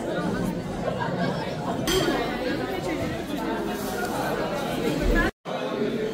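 Cafeteria hubbub: many people chatting indistinctly, with cutlery and dishes clinking. The sound cuts out for a moment near the end.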